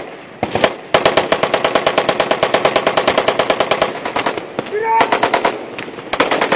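Close automatic gunfire: a single shot, then a long sustained burst of about ten shots a second lasting some three and a half seconds, with a few more shots near the end.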